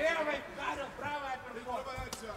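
Faint men's voices, quieter than the commentary around them.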